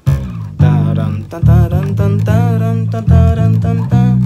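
Five-string electric bass plucked with the fingers, playing a line of low sustained notes in G minor, with a new note every half second to a second.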